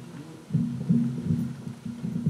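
Handling noise from a handheld microphone being passed from hand to hand: irregular low bumps and rumble picked up through the mic, starting about half a second in.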